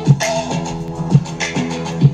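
Music with a steady beat playing through a RAGU T2 portable PA speaker, heard in the room.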